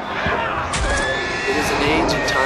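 A horse whinnying, a long high call through the second half, over a dense background of voices and rumble.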